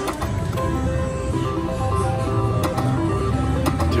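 Three-reel pinball-themed video slot machine spinning its reels: an electronic tune of stepping tones plays over a low hum, with sharp clicks in the second half as the first reels stop.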